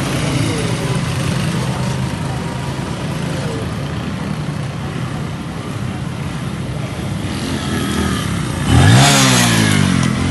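An engine runs at a steady low pitch, then about nine seconds in a motorcycle passes close by, its engine rising in pitch and then falling away as it goes past.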